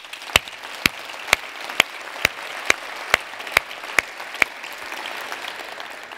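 Audience applause, with one person clapping close to the microphone about twice a second. The close claps stop about four and a half seconds in, and the applause then fades.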